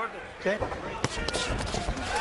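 Boxing arena sound with crowd noise and several dull thuds from the ring, and a sharp crack about a second in.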